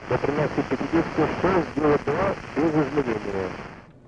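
A man speaking over a radio link, under a steady hiss of static that starts and cuts off abruptly with the transmission.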